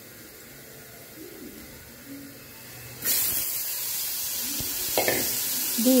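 Shredded raw green tomatoes hitting hot oil in a frying pan. A sudden loud sizzling hiss starts about halfway through and keeps going, with a couple of knocks near the end.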